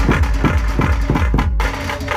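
Dhumal band drums playing a fast Sambalpuri rhythm, with rapid strokes about six a second over a deep bass. The bass drops out briefly near the end.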